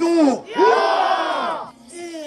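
A single loud shouted call, then a crowd of runners shouting together in a battle cry for about a second.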